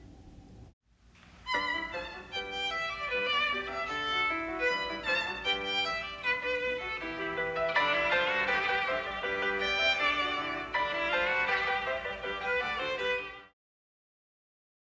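A violin playing a classical melody, starting about a second in and fading out shortly before the end.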